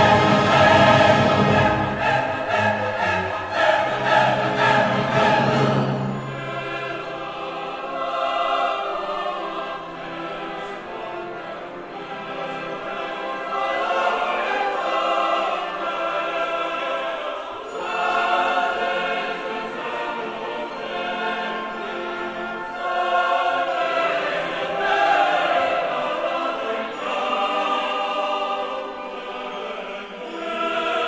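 Opera chorus singing with orchestra. For about the first six seconds the full orchestra plays loudly with deep bass; after that a lighter accompaniment runs under the sung lines.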